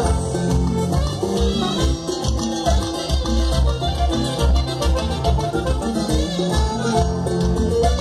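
A live brass band playing Mexican banda-style music, with held brass notes over a steady pulsing bass line.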